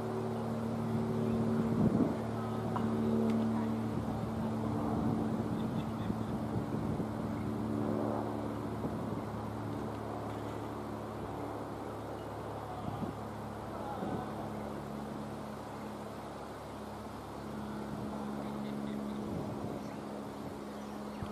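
An engine running steadily at a constant pitch, with a few short knocks, the loudest about two seconds in.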